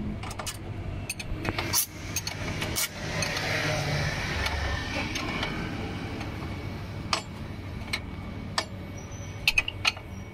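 Steel spanner clicking and clinking against the bolts as the rear brake disc assembly of an electric scooter is bolted back onto its frame, in separate sharp knocks that come more often near the end. A broad rise and fall of road noise passes through the middle.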